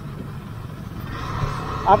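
Motorcycle running at low road speed, with low wind and road noise on the rider's microphone; a faint steady higher tone joins about a second in.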